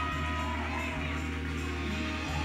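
Live gospel band music with a steady sustained low tone, and faint voices calling out from the audience.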